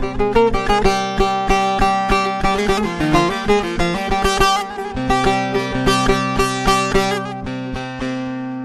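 Bağlama (long-necked Turkish saz) played solo: a fast picked melody, several notes a second, over ringing lower drone strings.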